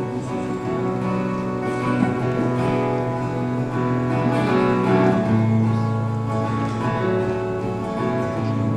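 A live bluegrass band playing an instrumental intro: strummed acoustic guitar over upright bass, with fiddle, mandolin and banjo, and no singing yet.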